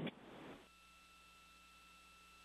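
Near silence: faint steady hiss with a thin, steady high tone on the broadcast audio line, after the last call fades out within the first second.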